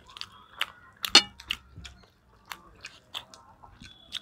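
Close-up eating sounds: chewing and mouth clicks from people eating rice and chicken curry by hand, an irregular string of short, sharp clicks, the loudest about a second in.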